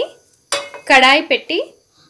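A nonstick frying pan set down onto the metal grate of a gas stove burner: a clank of metal on metal about a second in.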